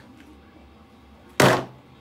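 A hard disk drive set down hard onto a pile of other hard drives on a table: one loud thunk about one and a half seconds in.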